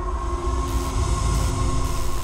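Dark cinematic logo sting: a heavy deep rumble under steady droning tones, with three short bursts of hiss.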